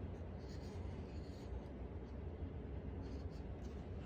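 Pencil scratching on paper in short, faint strokes as a child writes letters, over a steady low hum.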